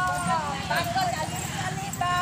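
Women's voices chanting in a sing-song way, with drawn-out gliding notes, over a steady low rumble.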